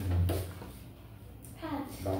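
Short snatches of speech in a small room, with brief handling noise of paper flashcards being turned, a light click about a quarter of a second in and another about a second and a half in.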